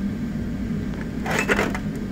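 Metal drill chucks and lathe centers clinking and shifting in a steel tool drawer, one short clatter about a second and a half in, over a steady low hum.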